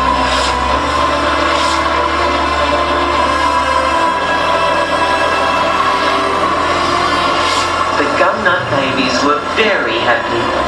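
Show soundtrack music of sustained, held tones over a low drone, with voices coming in over it near the end.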